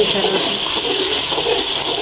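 Onion-tomato masala sizzling in oil in a metal pan with a splash of water, a metal spoon stirring through it, in a steady hiss; the water is there to soften the masala as it cooks down.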